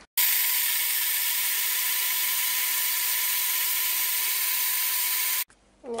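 Bullet-style personal blender running at a steady pitch, blending carrots and apples into a smoothie. It starts suddenly and cuts off suddenly near the end.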